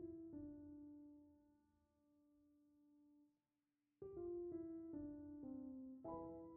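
Quiet, slow solo piano music: a few held notes that ring and fade, a brief lull just past the middle, then a new phrase of notes stepping down about four seconds in.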